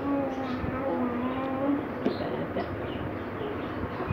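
A voice singing long, drawn-out notes with short breaks, with a few light knocks in between.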